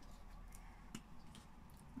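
A few faint, light clicks and taps as a glue stick is handled against paper on a wooden table, in an otherwise very quiet room.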